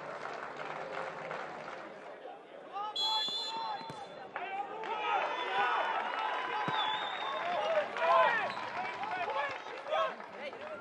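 Football match sound from the pitch and stands: voices calling and shouting over a light crowd murmur. A high whistle blast, held for over a second, sounds about three seconds in.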